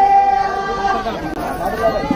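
A voice holding one long, steady note for about a second, then breaking into talk, over crowd chatter.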